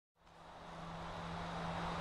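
Steady background noise with a low, steady hum. It fades in just after the start and grows slowly louder.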